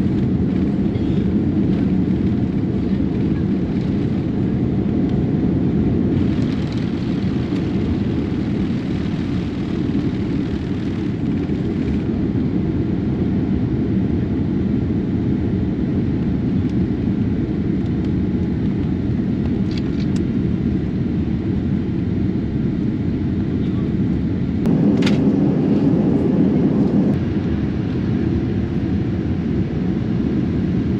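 Boeing 787-9 cabin noise during takeoff and climb-out: the steady low rumble of jet engines and airflow. About 25 s in it grows louder for a couple of seconds, starting with a sharp click.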